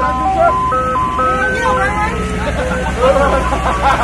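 Ice cream truck's chime jingle playing a simple tinkling melody over the truck's steady low engine hum; the tune stops about two seconds in, leaving the engine running under voices.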